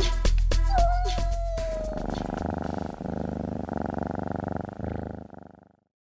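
A cat purring sound effect runs for about three and a half seconds and cuts off suddenly near the end. It follows the last second or two of a music track with a beat, and a single falling tone that fades into the purr.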